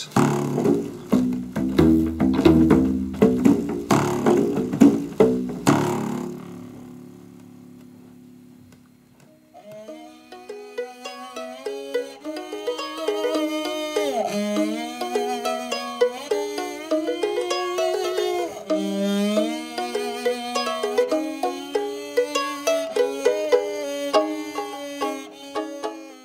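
Industrial-size rubber bands stretched around a large styrofoam box, plucked rapidly for about six seconds with low notes, then left to ring out and fade. After a short lull, a plucked-string tune with notes that bend in pitch starts about nine seconds in and runs on.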